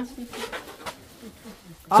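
Faint background voices at low level, with a bird calling.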